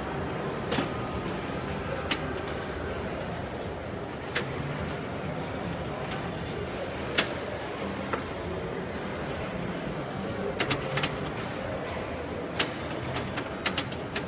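Wheel of Fortune pinball machine in play: sharp, scattered clacks of the flippers and the ball striking targets, one every second or few, with a quick pair and a cluster near the end. These sit over the steady din of a pinball arcade.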